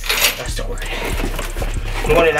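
Cardboard box and packing material rustling and crinkling as hands dig through them, with a louder crackle just at the start.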